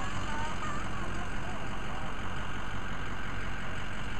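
Steady running noise of a motor vehicle driving along, a low drone under an even hiss, with a few faint short chirps in the first second or so.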